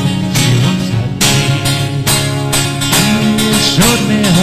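Solo acoustic guitar playing an instrumental passage, with plucked and strummed chords struck several times a second.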